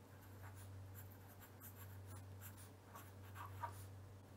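A pen writing on paper: faint, short scratching strokes as letters are written by hand, a little louder near the end. A steady low hum runs underneath.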